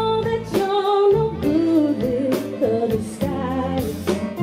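Live band music: a female lead vocalist singing a held, bending melody over electric guitar and drums, with regular drum and cymbal strokes.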